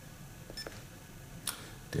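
A few faint clicks from pressing the keypad buttons of a handheld Phocus3 Smart Recorder to step to the next display screen, the sharpest about one and a half seconds in, over a low room hum. A voice starts just at the end.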